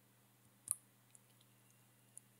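A single computer mouse click about two-thirds of a second in, advancing the presentation slide, with a few fainter ticks after it over a faint low hum.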